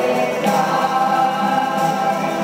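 A group of voices singing a hymn together in church, holding long notes; a new phrase begins about half a second in.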